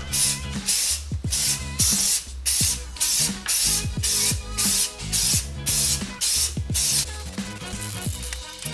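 Aerosol spray paint can sprayed in a run of short hissing bursts, about two a second, stopping about seven seconds in. Music with a drum beat plays underneath.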